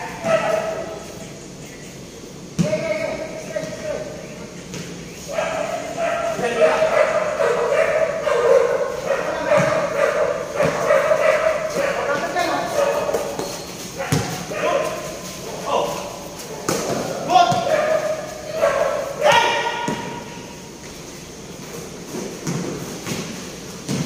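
Basketball players' voices shouting and calling out across a covered court, with occasional sharp thuds of the ball hitting the concrete floor.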